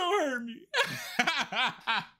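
A man laughing hard: a long rising-and-falling laugh, a short break, then a quick run of shorter bursts.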